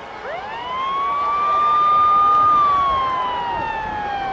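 Ambulance siren wailing: a single long note that sweeps up quickly a moment in, holds steady, then slowly falls in pitch through the second half.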